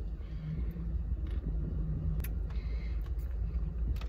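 Steady low rumble of a car heard from inside the cabin, with a faint hum that comes and goes and a few light clicks.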